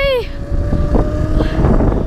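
Wind buffeting the microphone of a handlebar camera on an electric dirt bike being ridden along a path, heard as a loud low rumble. A thin steady whine rises slightly above it.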